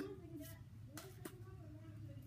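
Pokémon trading cards being handled and flipped from one to the next, a few soft clicks, under a faint murmuring voice.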